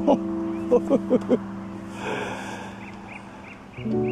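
An old man's short laugh, four quick breathy chuckles about a second in, followed by a breathy exhale. Soft sustained background music runs underneath, with a new chord coming in near the end.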